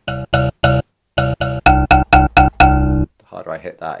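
A sampled mbira note from a software sampler, played about ten times over. The first notes are soft; from about halfway in the strikes come louder and brighter, as harder key presses switch to the sampler's louder velocity layers.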